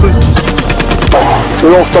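A rapid burst of automatic rifle fire, a quick run of shots lasting about half a second at the start, followed by a man's voice speaking.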